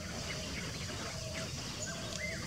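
Faint outdoor background with a few short, distant bird calls.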